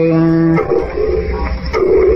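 Vietnamese Buddhist devotional song: a singer holds the last note of a verse line, which ends about half a second in. The instrumental accompaniment then carries on alone in the pause before the next line.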